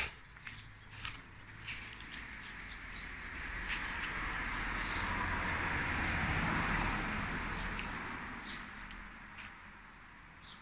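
A motor vehicle passing on a nearby street, its tyre and engine noise swelling over a few seconds and then fading away.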